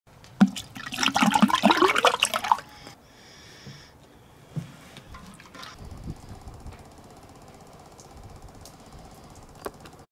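Liquid gurgling and splashing into a stainless steel drum for about two seconds, followed by a short hiss, then only a faint steady background with a single click near the end.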